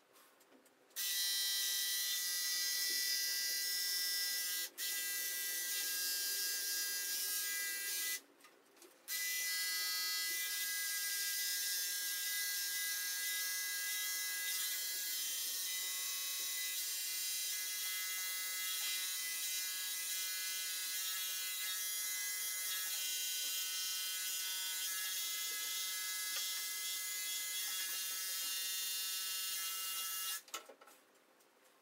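Corded electric grooming clippers running with a steady hum while cutting a Welsh terrier's coat. They switch on about a second in and stop for about a second around eight seconds in, then run on.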